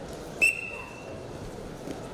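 Referee's whistle: one short blast, sharp and loud at its start and fading within about a second. It is the signal to begin wrestling in the par terre ground position.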